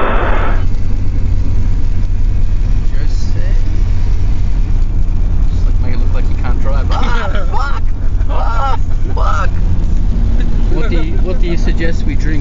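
Car driving, heard from inside the cabin: a steady low road and engine rumble, with voices talking over it in the second half.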